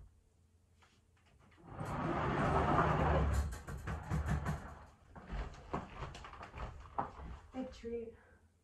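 A blanket-covered wire dog crate being moved, with a loud rustling rattle for about a second and a half, then a run of irregular clicks and knocks as it is set down and handled.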